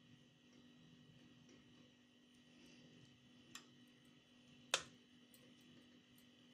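Near silence, broken by two light clicks a little past halfway, the second sharper: a metal utensil tapping against a steel colander.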